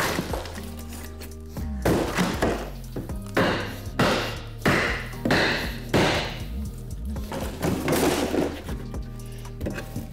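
Wood panelling and stud framing cracking and thudding as a small wooden partition wall is pried and wrenched apart: a series of sharp cracks and knocks, some drawn out, about a second apart. Background music plays underneath.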